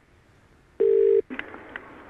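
A telephone line tone: a single steady beep, about half a second long, heard over the phone line about a second in.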